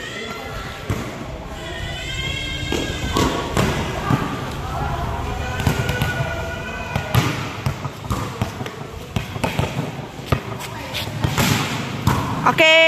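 A volleyball rally on a concrete court: the ball slapping off players' arms and hands as a series of sharp knocks, with players shouting high calls during the play.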